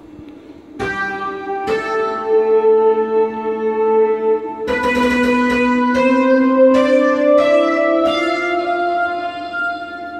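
Roland D-50 synthesizer notes triggered over MIDI by a laser harp as its beams are broken: about six rich, sustained notes entering one after another and ringing on, overlapping into a slow melody.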